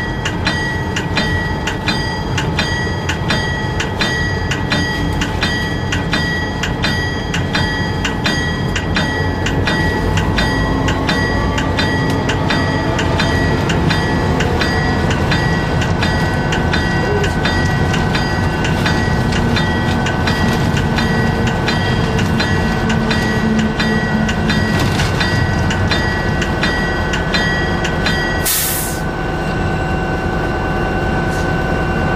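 Locomotive bell ringing at a steady two strokes a second over the low rumble of an EMD SD40-2's engine and wheels, as the train runs through a level crossing. The bell stops near the end and a short burst of air hiss follows.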